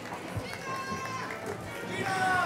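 Processional music playing, with a held melody note about halfway through, over the murmur of a crowd.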